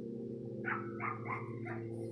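An animal's four short, high calls in quick succession, over a steady low hum.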